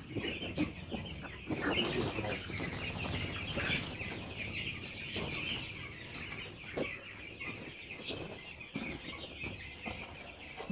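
A flock of young broiler chickens peeping and chirping continuously, with now and then a flap of wings and a few short knocks.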